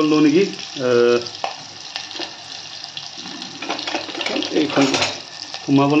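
Sliced onions frying in hot oil in a clay pot: a steady sizzling hiss.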